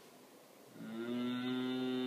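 A man's voice humming one long, steady, low "mmm", starting just under a second in, given in pleasure at a child's kiss.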